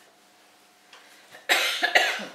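A person coughing twice in quick succession, loud and sudden, near the end after a near-quiet pause.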